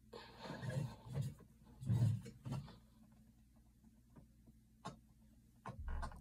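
A few short, strained breaths and grunts from holding a 50-pound compound bow at full draw and letting it down, followed by a single light click about five seconds in.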